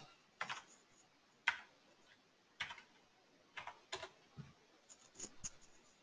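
Faint, unevenly spaced key clicks of a computer keyboard, about eight strokes, as a short line of code is typed and entered.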